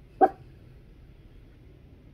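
A single short, sharp dog bark just after the start.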